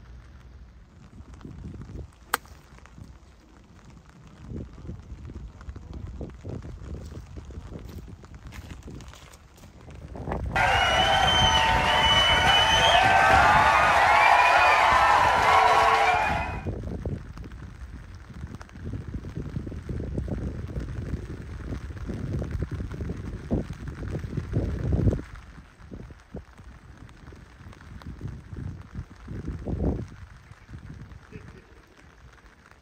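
Wind buffeting the microphone in low, uneven rumbles, with a single sharp click about two seconds in. About ten seconds in, a loud burst of many overlapping voices cuts in and stops abruptly some six seconds later.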